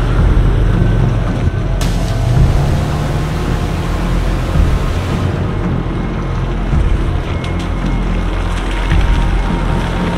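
Road traffic, cars driving past on a street, heard through heavy wind rumble on the microphone, with background music underneath.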